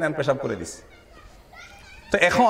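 A man's lecture voice over a microphone trails off with a falling pitch, then a short pause in which faint high voices are heard in the background.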